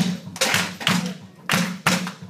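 Rhythmic percussion: a run of hard thuds with sharp attacks, roughly three or four a second in an uneven pattern, each carrying a low drum-like note.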